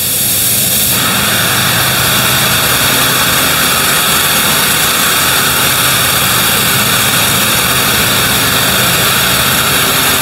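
Gravity-feed paint spray gun hissing steadily as paint is sprayed onto a car roof. The air rush grows louder about a second in as the gun opens up, over a steady low hum.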